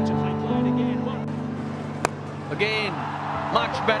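Background music with long held notes, broken about two seconds in by the single sharp crack of a cricket bat hitting the ball. Crowd noise swells after the hit, and a commentator starts to speak at the very end.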